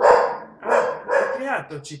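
A man's voice laughing in a few short bursts, then speech resuming near the end.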